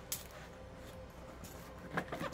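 Cardboard shipping box handled as its flaps are pulled open, with one brief sharp sound just after the start and another near the end, over a low steady hum.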